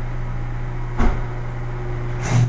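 Chamberlain electric garage door opener running after its wall button is pressed, a steady motor hum, with a single clunk about a second in. The opener is driving the door down and bringing its released trolley round to re-engage.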